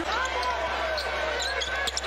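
A basketball dribbled on a hardwood arena court, several irregular bounces over a steady arena crowd murmur.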